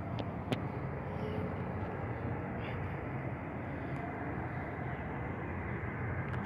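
Steady low outdoor rumble of the city's background noise, with no single sound standing out. Two faint clicks come about half a second in.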